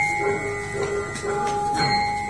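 Javanese gamelan-style music: struck metal tones that ring on steadily, with a fresh stroke near the end changing the notes.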